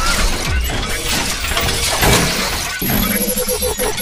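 Intro sound effects: loud, layered shattering and crashing with several sharp hits, over music.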